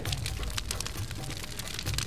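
Wood fire crackling with many small irregular pops, over soft low background music.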